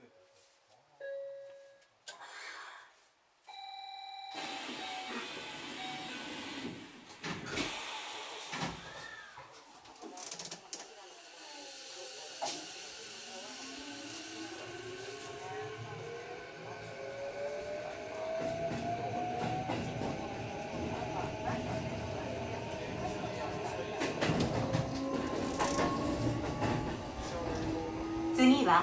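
Electric commuter train pulling away and accelerating: a few short electronic beeps, then running noise begins and the traction motors' whine rises steadily in pitch as the train gathers speed, with wheels rolling on the rails.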